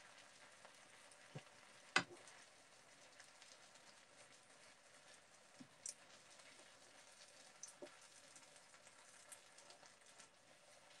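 Faint sizzling of a stir-fry in a frying pan, with a few light clicks as a wooden spoon stirs noodles into it. The loudest sound is one sharp knock about two seconds in.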